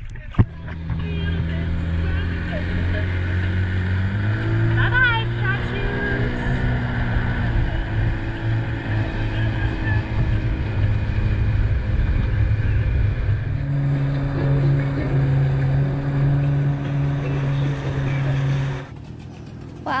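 Dinghy outboard motor running under way, its pitch stepping up about four seconds in and again past halfway as it speeds up. A single sharp knock comes just before the motor is heard, and the motor sound ends abruptly near the end.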